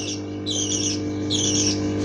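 A pet bird squawking over and over: short, harsh, high-pitched calls about every two-thirds of a second, over a steady low hum.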